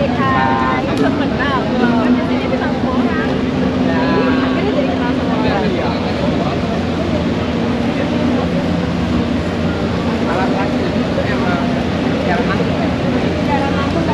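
Indistinct chatter of several people's voices over a steady low rumble, with a held low hum for a few seconds near the start.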